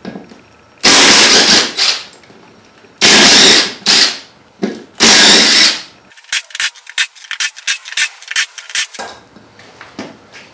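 Half-inch cordless impact wrench hammering the bolts of a UTV wheel's beadlock ring loose: three loud bursts of about a second each, then a run of short rapid blips.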